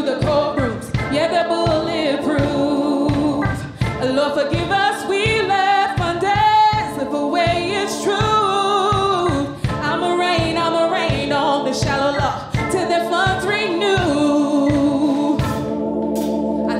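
Live band playing, with a woman singing lead over electric guitars, bass, keyboard and drums keeping a steady beat.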